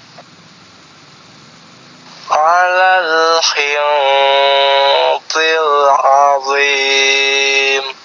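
A recorded male voice from an Iqro reading app chanting Quranic Arabic words in long, held, melodic notes. It starts about two seconds in and runs as three phrases with short breaks between them.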